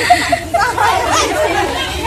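A group of young women chattering, several voices at once.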